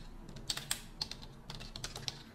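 Computer keyboard keys being typed: a handful of separate, irregularly spaced keystroke clicks as a word is typed out.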